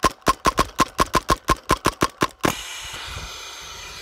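A T15 paintball marker fed by an MCS Box Mag v2 firing a rapid string of about a dozen shots, roughly five or six a second. The shots stop about two and a half seconds in, and a steady hiss of air follows as the tank runs out of air.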